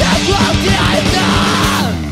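Loud hardcore punk music with yelled vocals; it breaks off sharply at the very end.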